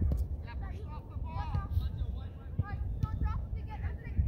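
Voices shouting and calling out across a youth soccer field, with low wind rumble on the microphone and a sharp knock right at the start.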